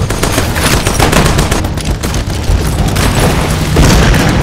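Rapid machine-gun fire, shot after shot in quick succession, with heavy booms mixed in and a loud hit near the end, as in a film battle soundtrack.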